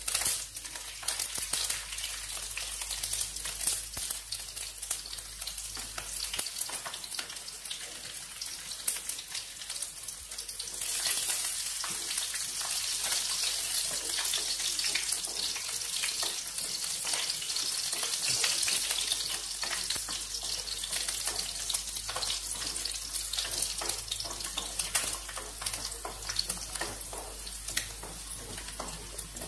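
Garlic cloves and whole seeds frying in hot oil in a wok, a steady crackling sizzle with many small pops that grows louder about eleven seconds in. A wooden spatula stirs through the pan.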